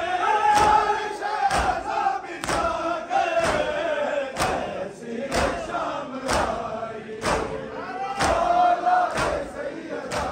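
A crowd of men chanting a noha together, with a sharp, even beat of matam chest-beating, hands striking chests about once a second.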